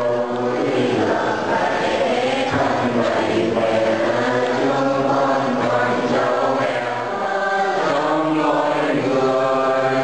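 Congregation of mourners chanting a prayer together, many voices in a continuous sung chant.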